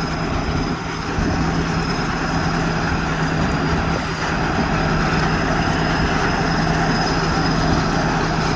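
Tracked crawler machine's diesel engine running steadily with a low drone as it drives on its tracks, getting louder about a second in.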